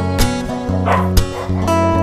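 Acoustic guitar background music, plucked notes, with a brief rough sound about a second in.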